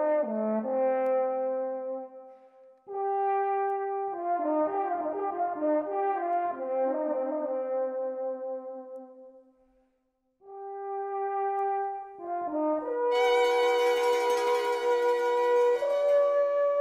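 Alphorn playing slow held-note phrases, broken by two short pauses. About three seconds before the end, a violin and other instruments join, making the sound much fuller and brighter.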